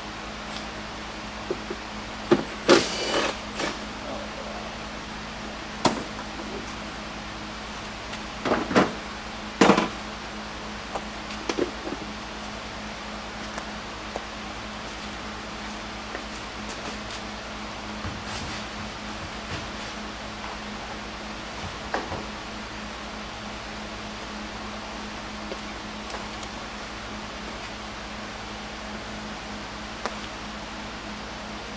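Scattered clanks and knocks of hand tools and metal parts being handled and set down, in a few short clusters, the loudest a few seconds in and again near ten seconds, over a steady low hum.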